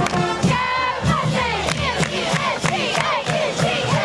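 Cheerleaders and crowd chanting and shouting together over steady hand claps, about three a second.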